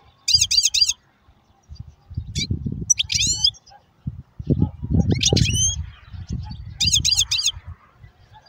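European goldfinch singing in five short bursts of fast, high twittering notes, over a low rumbling noise.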